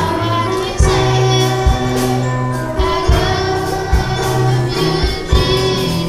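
Youth gospel choir singing in full voice over instrumental backing, with low drum hits about once a second.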